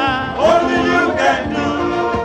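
A male lead singer and a men's gospel choir singing a worship song, the lead's voice sliding up and down in a run about half a second in.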